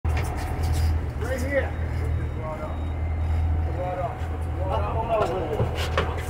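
Steady low rumble of a sportfishing boat's motor running, with excited whoops and shouts such as "Yeah!" from the crew.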